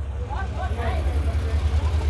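Faint voices of people talking over a steady low rumble.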